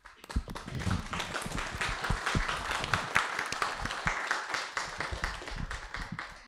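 Audience applauding, many people clapping at once; it starts at once and thins out near the end.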